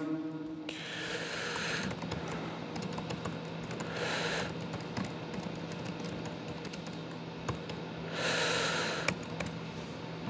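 Laptop keyboard being typed on, a quick, uneven run of key clicks picked up through the lectern microphone. Three brief rushes of hiss come about a second in, at about four seconds and at about eight seconds.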